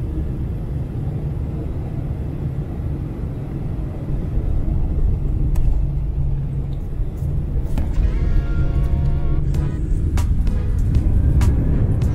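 Jet airliner rumbling as heard from inside the passenger cabin while the plane rolls along the runway, steady and low-pitched, with a slight swell in loudness in the second half.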